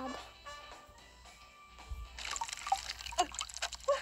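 Soft background music at first; from about two seconds in, the wet rustle of a plastic bag being lifted and handled, with liquid dripping.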